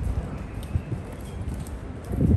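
Footsteps on tiled pavement, soft irregular thumps over a low rumble.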